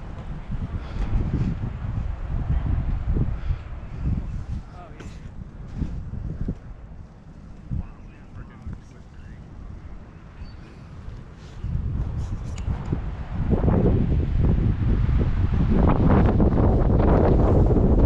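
Wind buffeting the microphone in uneven gusts, dropping lower for a stretch and then growing much louder about thirteen seconds in.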